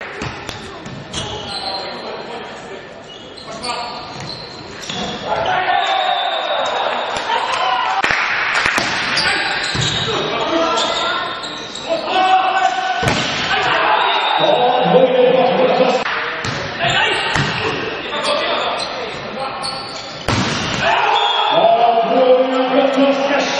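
Volleyball match sounds in a sports hall: the ball is struck hard several times on serves, spikes and blocks, each a sharp slap, with players' and other voices shouting around it. A sudden jump in loudness comes near the end.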